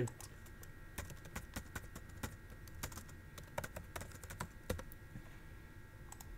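Typing on a computer keyboard: a run of soft, irregular key clicks.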